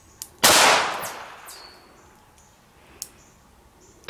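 A single handgun shot about half a second in, its report trailing off over a second or so. Another shot starts right at the end.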